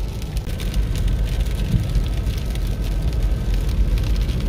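Steady low rumble of a car driving on a wet highway, heard from inside the cabin, with rain ticking on the windshield.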